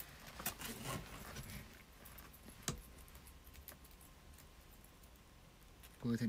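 Faint rustling of a leather-and-shearling vest with light metallic clicks from its zippers as the wearer moves, several in the first second and one sharper click a little before the middle.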